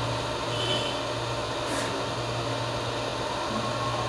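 Steady low hum with hiss, with a marker writing on a whiteboard making faint brief strokes.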